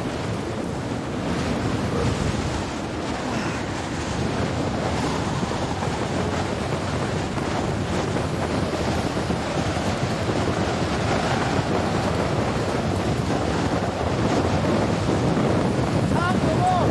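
Strong blizzard wind buffeting the microphone: a steady, loud rushing noise that grows a little louder toward the end.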